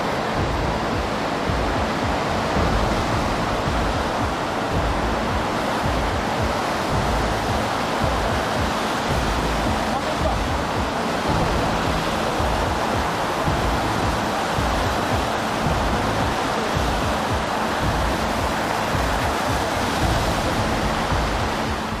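Tsunami water rushing and churning through a bay: a steady, unbroken rush of water noise.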